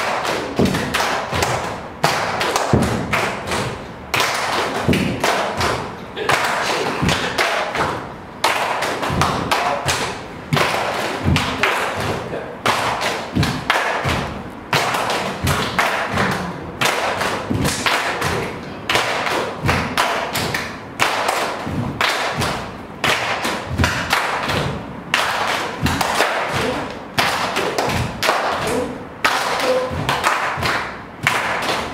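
A group's body-percussion rhythm: many bare feet stamping on the floor and hands clapping together, in a pattern that repeats about every two seconds.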